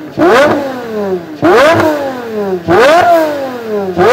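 Pagani Huayra La Monza Lisa's V12 with titanium exhaust being free-revved while stationary. It gives three sharp blips about a second and a quarter apart, each snapping up in pitch and sliding slowly back down, with a fourth starting at the very end.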